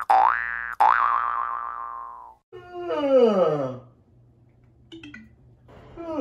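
Cartoon 'boing' sound effects: two springy boings, one right at the start and one just under a second in, each swooping up in pitch and then ringing away. A longer sound effect follows that slides steadily down in pitch.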